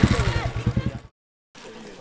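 Motorcycle engine running with a low, even thumping at about ten beats a second, cut off abruptly about a second in.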